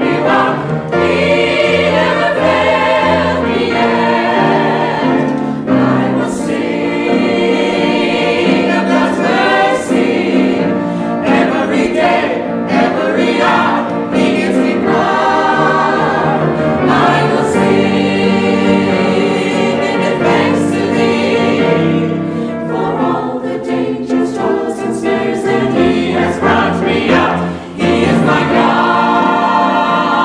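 A mixed church choir of men's and women's voices singing a gospel song in harmony. The singing is loud and full.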